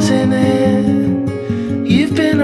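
Background music: a song with guitar and a steady rhythm of low notes.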